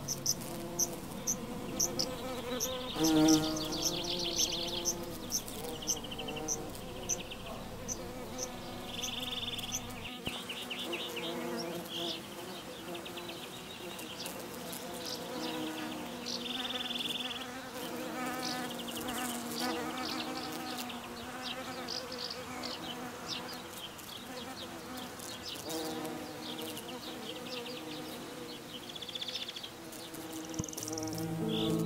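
Bees buzzing in flight, a steady hum that wavers up and down in pitch. Short high chirps come about twice a second during the first ten seconds, and brief high trills come and go throughout.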